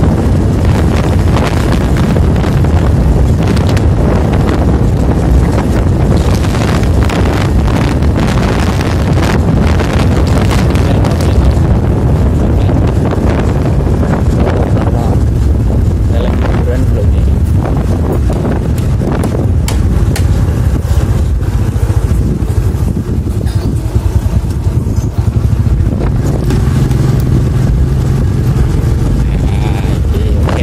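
Wind buffeting the microphone with a vehicle's engine running underneath, as the camera rides along a road.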